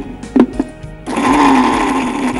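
Electric mixer grinder with a steel jar starting up about a second in and running steadily at high speed, grinding biscuits into crumbs.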